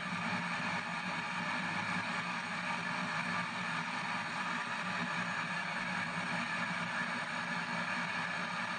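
P-SB7 spirit box sweeping radio stations in reverse, putting out a steady hiss of radio static with no clear voices.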